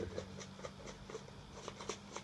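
Paper packaging handled in the hands, rustling and crinkling in a string of small crackles.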